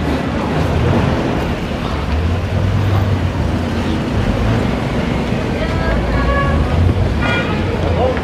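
Town street ambience: a steady low rumble of traffic and vehicle engines, with voices of passers-by and a short call near the end.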